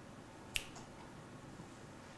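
A single short, sharp click about half a second in, against quiet room tone.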